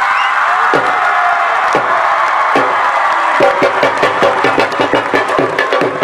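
Drumming over crowd noise: a few single drum strokes about a second apart, then a fast, steady beat of about four strokes a second from about halfway through.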